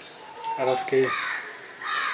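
A man's voice briefly, then a bird calling in the background about a second in and again near the end.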